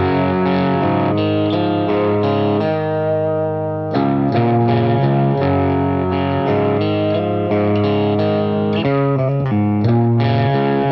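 Rock music led by a distorted electric guitar playing held chords that change every half second or so. The sound thins briefly about three seconds in, and the full chords return about four seconds in.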